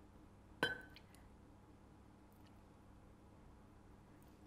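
A single light clink of a metal tablespoon against a ceramic jug about half a second in, with a short ring, and a fainter tick just after; otherwise near-silent room tone.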